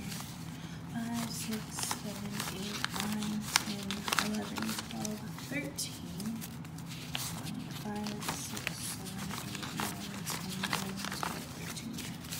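Paper banknotes being counted by hand, a run of crisp rustles and flicks as bills are thumbed through one by one, with a person's voice going on underneath.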